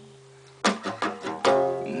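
Nylon-string classical guitar strummed. A chord fades out, then the guitar is strummed again about two-thirds of a second in, with a few quick strokes and a chord left ringing from about halfway.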